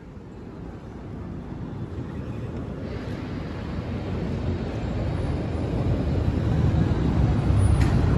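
Low, even rumble of traffic and rolling luggage-trolley wheels on paving, growing steadily louder, with a short click near the end.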